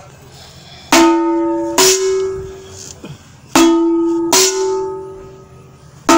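A metal gong struck in two pairs, a lower note then a slightly higher one, each stroke ringing and fading. The first pair comes about a second in and the second about three and a half seconds in.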